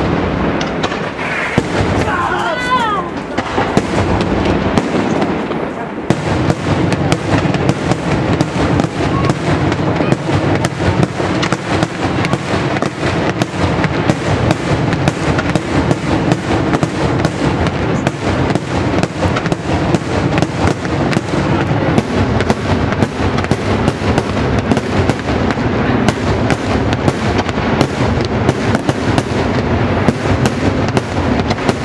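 Daytime aerial fireworks: shells bursting overhead in a rapid string of bangs, which thickens after about six seconds into a near-continuous barrage.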